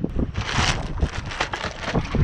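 Wind buffeting the microphone on an open boat: a steady low rumble and hiss, with a louder rush of hiss about half a second in.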